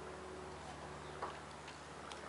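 Faint clicks and a light knock about a second in, from hands working on a petrol push lawn mower whose engine is not running, over a steady low hum.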